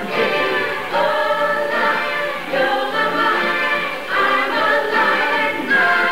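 Stage-musical cast singing together as a chorus, with musical accompaniment, in a live theatre performance.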